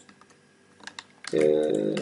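A few short, sharp computer keyboard keystrokes in the first second, as code is copied and pasted. A man's drawn-out voice starts about a second and a half in.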